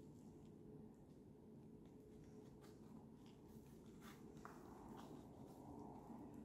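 Near silence: faint room tone with a few soft clicks and rustles as a backpack shoulder strap is squished down into the clamp of a Peak Design Capture camera clip.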